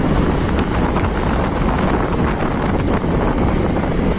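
Heavy wind buffeting the microphone of a phone carried on a moving motorcycle, a loud steady rush with the bike's running and road noise mixed in.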